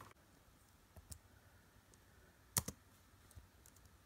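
Dell laptop keyboard keys pressed one at a time: a few scattered clicks, the loudest about two and a half seconds in.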